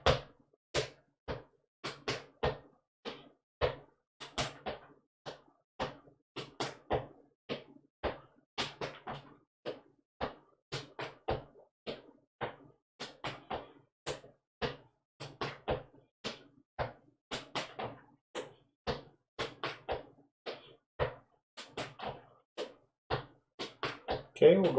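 Clogging basic step, the double toe step, danced in shoes on a concrete floor: a steady run of sharp foot strikes, about three a second in small groups, at a slightly quickened tempo.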